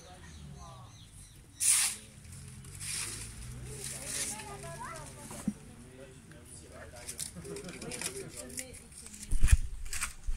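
Faint, indistinct voices of people outdoors, with a short loud hiss about two seconds in and a loud low thump near the end.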